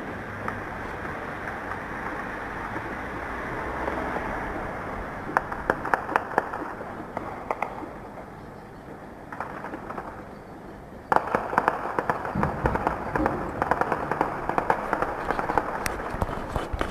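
Gunfire in an urban firefight: a few scattered shots around the middle over a steady rushing background, then from about eleven seconds in a sudden, dense run of rapid gunshots.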